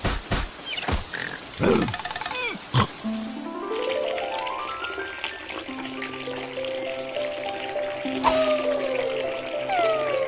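Cartoon soundtrack: short squeaky character vocalisations over rain. About three seconds in, a music cue starts with a quickly rising run of notes and then held tones, over gushing water.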